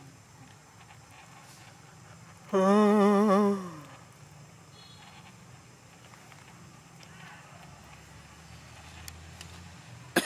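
An animal call: one loud, wavering cry about a second long, its pitch dropping at the end, heard over a quiet outdoor background.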